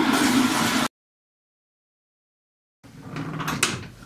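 Handling noise from a camera being gripped close to the microphone: a loud rushing rumble that cuts off abruptly about a second in. After about two seconds of dead silence at an edit, rustling and bumping handling noise builds up near the end.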